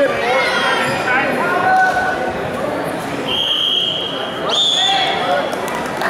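Voices shouting in a large hall, then a long, shrill whistle blast starting about halfway through, lasting nearly three seconds. Its pitch steps up a little partway through. It is a wrestling referee's whistle stopping the action.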